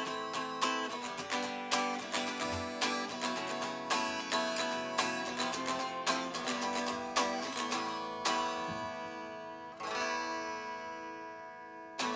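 Unplugged Danelectro '59 electric guitar strummed with no amplifier, a run of chords played in quick, rhythmic strokes. Near ten seconds in, one last chord is struck and left to ring out and fade.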